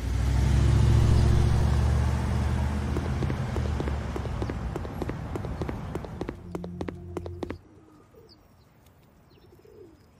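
Car engine running as the car pulls away and drives off. It is loudest about a second in, fades over several seconds and cuts off suddenly about seven and a half seconds in.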